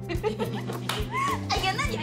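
Soft background music with steady held notes, under a woman's high-pitched excited squeals and exclamations of delight.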